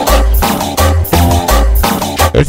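Loud cumbia dance music played over a sound system, with a heavy bass beat repeating steadily.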